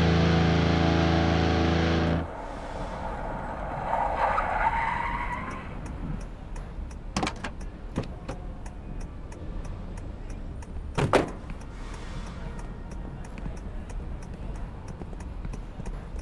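Heavy metal music cuts off abruptly about two seconds in. A car follows on the road: a short screech about four seconds in, then a few sharp knocks, the loudest near the eleven-second mark, over a low steady rumble.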